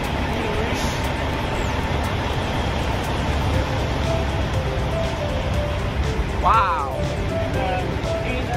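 Steady low rumble of idling diesel truck engines. Quiet background music comes in about halfway through, and a short sliding tone sounds near the end.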